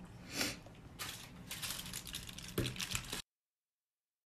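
Gloved hands handling oily boiled potatoes in a bowl and on a foil-lined baking tray: short bursts of rustling and crinkling. The sound cuts off abruptly just after three seconds in.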